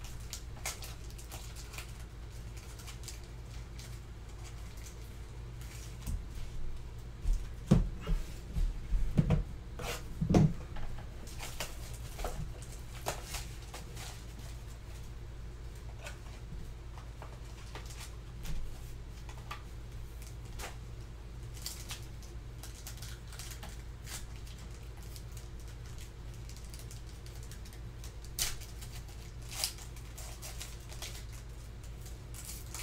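Foil trading-card packs and cards being handled at a table: scattered crinkles, taps and clicks, busiest for several seconds between about six and thirteen seconds in, over a steady low hum.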